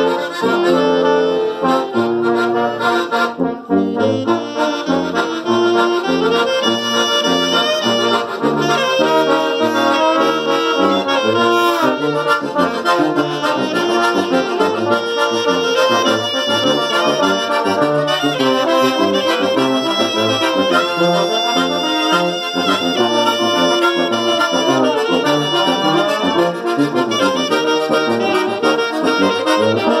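Small ensemble of alto saxophone, accordion, valve trombone, slide trombone and tuba playing a tune together in a room, with a moving bass line under the melody.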